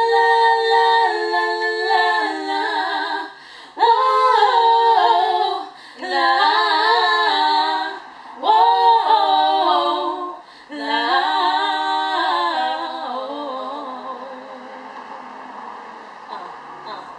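Two young women's voices singing a cappella without words, in five held phrases that step up and down in pitch. The last phrase drifts downward and fades.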